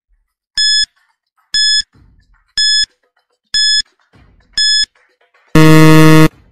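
Quiz countdown timer sound effect: five short, high beeps about a second apart, then a loud, harsh buzzer about a second long as the five-second guessing time runs out.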